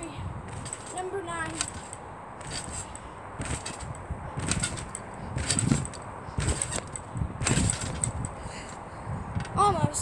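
A child bouncing on a trampoline: the springs and mat sound with each bounce, about once a second, through a flip.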